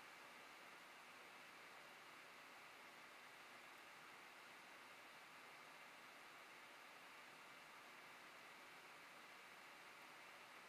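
Near silence: a steady, faint hiss of room tone.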